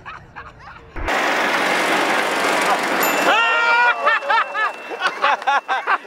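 An abrupt loud rush of noise about a second in, then excited whooping and shouting voices that rise and fall in pitch, as in a celebration.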